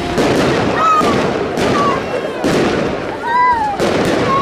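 Fireworks going off: about four loud bangs a second or so apart over continuous crackling of bursting shells.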